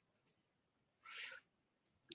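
Faint computer mouse clicks, a few short ticks, with a brief soft rush of noise about a second in.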